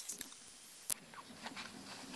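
A very loud, very high-pitched steady electronic whine, a single thin tone. It drops out for an instant just after the start, comes back, and cuts off suddenly about a second in. After it there is only faint room noise with a low hum.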